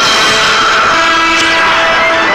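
Loud, sustained brass chord from an orchestral film score, held steady as the title music begins.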